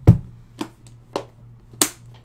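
Hard objects handled on a desk: a heavy knock at the start, then three sharper clicks about half a second apart, the last one near the end the crispest.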